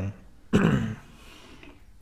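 A man clearing his throat once: a single short burst about half a second in, followed by low room tone.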